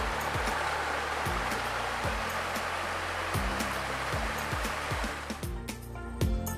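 Rushing water tumbling over rocks in a cascade, mixed with background music that has a steady bass line. The water noise fades out about five seconds in, leaving the music alone.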